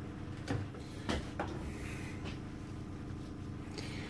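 Quiet handling of a foam air-filter pre-filter on a steel workbench as gloved hands pick it up: three soft knocks about half a second, a second and a second and a half in, over a steady low hum.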